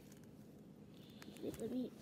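Quiet room with a faint tick, then near the end a soft, low murmured voice sound, an "mm" or "ooh" rather than words.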